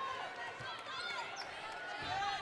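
Basketball court sound during live play: a ball dribbled on the hardwood floor, with a few short high-pitched sneaker squeaks about a second in, over a low arena crowd murmur.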